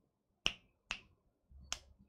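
Three short, sharp clicks, the first about half a second in, the next about half a second later, and the third near the end, with quiet between them.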